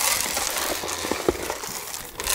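Grain poured from a plastic scoop into a plastic feed trough: a steady, hissing patter of kernels that eases off near the end, with a few light knocks.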